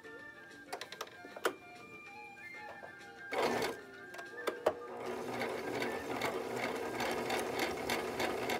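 Compact electric sewing machine stitching through fabric. It makes a short burst about three seconds in, then runs steadily from about five seconds in.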